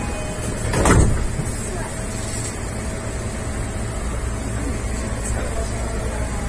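JR East E233-5000 series electric train standing at a platform, heard from the cab: a steady low hum of its onboard equipment, with one short, loud burst of noise about a second in.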